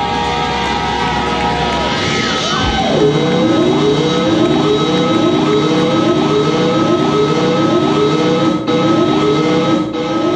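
Electric guitar feedback and effects-pedal noise over a sustained drone, with a steady high tone held throughout. About two to three seconds in, a pitch swoops steeply down, and after that a short rising swoop repeats a little faster than once a second.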